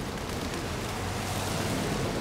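Steady outdoor city ambience by the water: an even hiss of distant traffic on wet streets, with a faint low engine hum in the middle.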